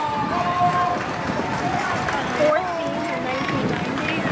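Voices calling out across the field, with several drawn-out shouted calls and some chatter, none of it close enough to make out words.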